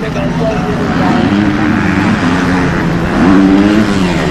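Racing motorcycle engines revving hard on a dirt track, their pitch rising and falling through gear changes, with a sharp climb in revs about three seconds in.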